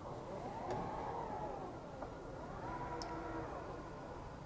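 Tesla Model X falcon-wing rear door powering open: its electric drive whines in two rising-and-falling sweeps, one after the other, with a few light clicks.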